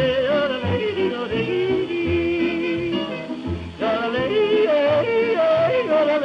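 A male singer yodelling, his voice breaking quickly up and down in pitch, over a hot jazz band with a steady bass beat. It is heard from a badly worn 1931 Edison Bell Radio 78 rpm record played through an early-1930s electric gramophone soundbox.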